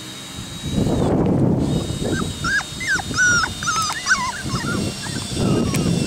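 Puppies whimpering in a run of short, high squeaks while an adult dog wrestles and lies on top of them, with a loud rustling noise before and after the squeaks.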